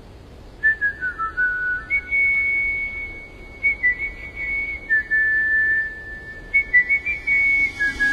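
A whistled melody in single clear notes, each held and then stepping to another pitch, over a soft hiss.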